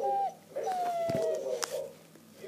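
A dog whining: a short whine right at the start, then a longer one about half a second in that slides slowly down in pitch.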